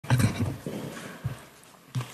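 A few short knocks and thuds, the loudest near the start, with a quieter stretch before another knock at the end: handling noise picked up by the lectern microphone.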